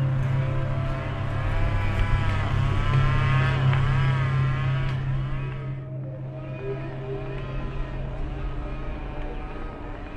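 A heavy truck drives past on a road, its engine hum loud and its pitch rising and falling as it goes by. About six seconds in, this gives way to a quieter, steadier engine sound.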